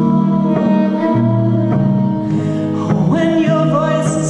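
A woman singing over an acoustic guitar strummed in a slow, even rhythm, about one strum every half second or so.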